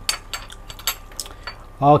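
A metal spoon clinking lightly against a dish, about five small clinks over a second and a half.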